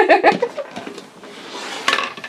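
Plastic toy playset pod (Poppy's Coronation Pod) being handled and pressed shut: light plastic rubbing, then one sharp plastic click near the end as it closes.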